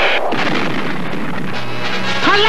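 Soundtrack of an animated TV station logo ident: an explosion-like noise effect that hits at the start and dies away over about a second and a half, set in synthesized music. A low held note comes in near the end.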